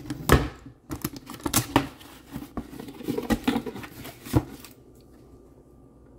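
Cardboard box and its paper packaging being opened and handled by hand: a quick, irregular run of scrapes, taps and crinkles, loudest right at the start and again about four and a half seconds in, then dying down.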